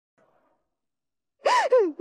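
Near silence, then about a second and a half in a woman lets out a short, loud sobbing wail, its pitch rising and then falling, as she breaks down crying.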